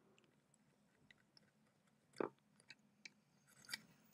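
Near silence with a few faint, short crackles and ticks, the loudest about two seconds in and another shortly before the end: flux crackling as a soldering iron works fresh solder over circuit-board pads.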